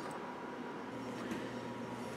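Quiet room tone with a faint steady hum that gets slightly stronger about a second in, and a couple of faint soft ticks.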